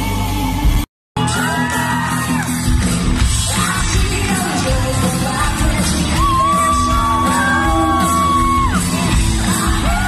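Live rock band with a woman singing lead, recorded from the crowd in a large hall. The sound cuts out to silence for a moment about a second in, then carries on. Around the middle she holds one long high note for a couple of seconds.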